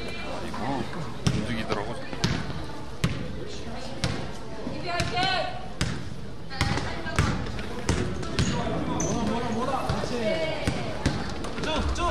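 A basketball bouncing on a gym floor in a game, with sharp, irregular thuds from dribbling and passes, under the voices of players and spectators in a large hall.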